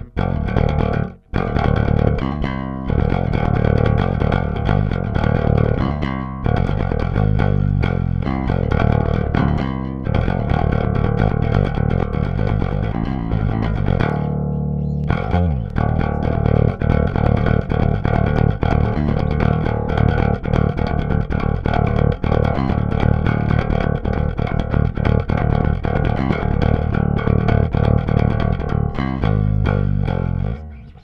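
KliraCort Jazz Bass, a Jazz-style electric bass with two single-coil pickups, played fingerstyle with a hard attack. The line is continuous, with a brief break about a second in and another about halfway, then a faster, busier passage. Its tone is very angry, harsh and dry.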